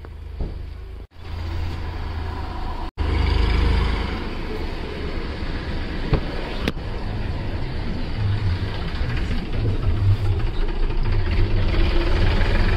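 Car driving, its engine and road noise heard from inside the cabin as a steady rumble that grows gradually louder. The sound cuts out abruptly twice in the first three seconds.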